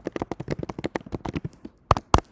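Fast typing on a computer keyboard: a quick, even run of key clicks. Two louder clicks come near the end.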